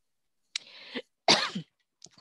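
A woman coughing twice: a shorter cough about half a second in, then a louder one just past the middle.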